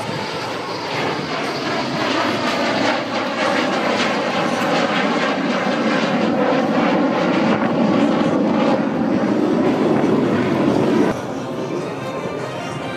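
A US Air Force Thunderbirds F-16 fighter jet flying past under power, its jet engine noise building steadily over several seconds. The sound drops off abruptly about a second before the end.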